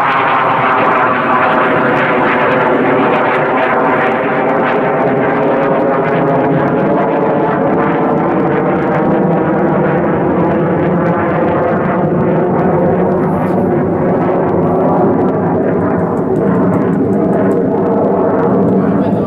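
A train on the electrified main line running at the station: a loud, steady electric whine with many overtones, dipping slightly in pitch over the first second or so and then holding.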